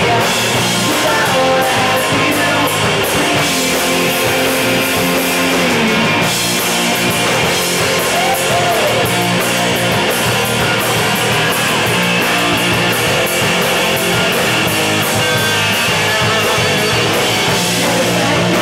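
Live rock band playing loud: electric guitar and drum kit, with a steady run of cymbal hits keeping the beat.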